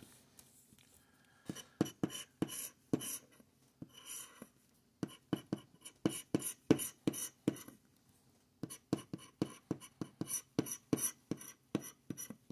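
A plastic scratcher scraping the coating off a scratch-off lottery ticket in quick short strokes, a few a second. The scratching starts about a second and a half in and comes in three spells with brief pauses between them.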